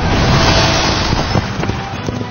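Cartoon rushing-wind sound effect of a whirlwind sweeping past, coming in suddenly and easing off, with a couple of brief knocks in the second half.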